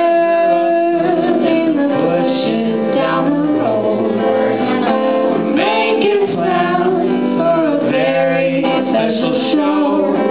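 Live duet: a woman's voice and a man's voice singing together over guitar, with long held notes.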